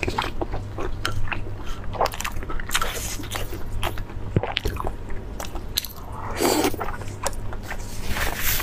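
Close-miked chewing of a mouthful of soft, sauce-glazed meat: a stream of wet smacking clicks. A short burst of noise comes about six and a half seconds in, over a steady low hum.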